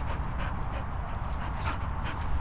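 A dog panting close to the microphone, over a steady low rumble.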